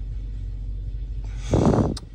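Car engine idling, a steady low hum heard from inside the cabin, with a brief loud vocal sound near the end.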